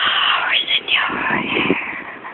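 A woman's breathy, whispered voice close up on the microphone.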